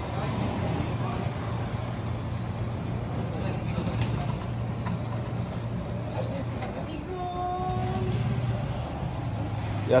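Street noise carried by a steady low engine hum from a motor vehicle, with a higher held tone lasting about a second, about seven seconds in.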